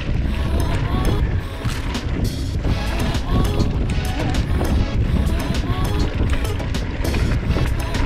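Wind rushing over the helmet or handlebar camera's microphone and a mountain bike rattling over a rough dirt trail, steady and loud with many small knocks, over background music.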